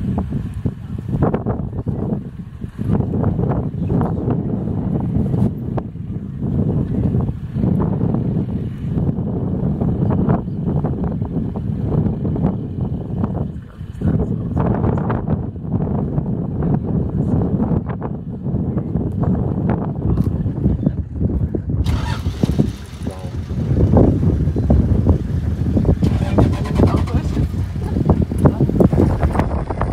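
Safari vehicle engines running, a low steady rumble, with people talking quietly over it. About three-quarters of the way through the sound turns brighter and grows louder.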